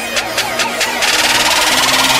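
Electronic intro music building up: fast repeated hits over a low held bass note, giving way about a second in to a loud, sustained, buzzing noise wash.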